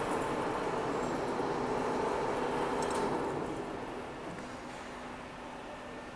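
Heavy-gauge U-channel roll forming machine running: a steady mechanical hum with a faint whine, getting quieter about halfway through.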